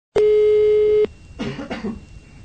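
Telephone ringing tone heard down a landline by the caller: one steady beep lasting just under a second, cut off sharply. Two brief bursts of a person's voice follow.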